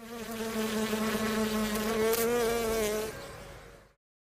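A steady, evenly pitched buzz, with a slight waver in pitch about two seconds in, fading out over the last second.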